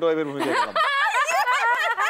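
Studio talk: a lower voice speaking, then high-pitched laughter from about a second in.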